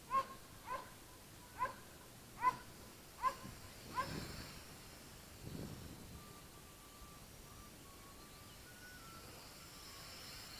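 An animal calling six times in the first four seconds: short, sharp calls a little under a second apart.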